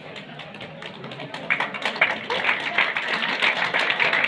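Audience clapping, irregular and thickening about a second and a half in.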